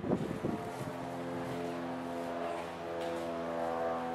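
A steady engine drone holding several pitches, as of a motor running close by, with a few short low thumps in the first half-second.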